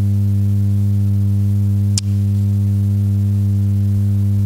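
Loud, steady low electrical hum from the sound system, a low buzz with a ladder of even overtones. A single sharp click comes about halfway through.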